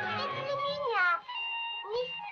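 A cartoon bird character's drawn-out, wailing cry that slides down in pitch about a second in, followed by music holding a steady note.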